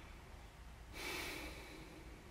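A person drawing in a breath, a soft intake lasting under a second that starts about a second in, over quiet room tone.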